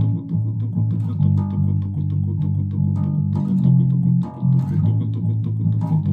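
Electric bass guitar played fast: rapidly repeated low notes, plucked up and down with one finger the way a pick would be used, the pitch shifting a few times as the riff moves between notes.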